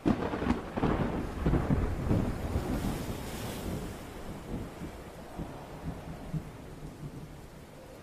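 A sudden crash of thunder, then rolling rumbles that die away over about five seconds.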